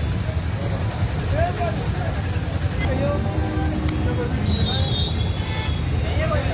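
Busy street ambience: a steady low rumble of road traffic with indistinct voices of people nearby.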